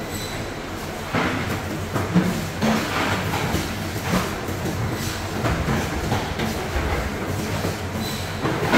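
A wide-bladed knife making short rasping strokes as it cuts a large king mackerel fillet away from the backbone on a plastic cutting board, irregularly about once a second, over a steady machinery rumble.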